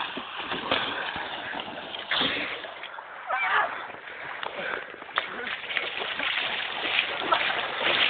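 Sea water splashing and sloshing in the shallows, a continuous rough wash of noise, with faint voices behind it.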